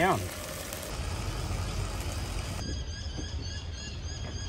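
Bacon sizzling steadily in a saucepan on a portable butane camp stove. It cuts off abruptly about two and a half seconds in, leaving a quieter outdoor background.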